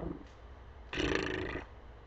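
A man's audible breath, a breathy rush of air lasting well under a second, about a second in.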